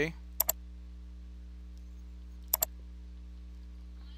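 Two quick double clicks of a computer mouse, about two seconds apart, over a steady low hum.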